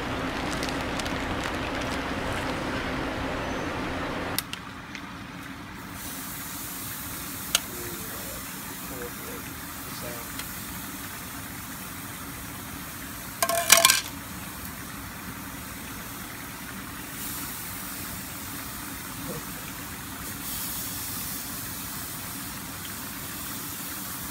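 Marinated meat sizzling on a barbecue grill, a steady hiss that drops to a quieter sizzle about four seconds in. A brief louder sound about fourteen seconds in.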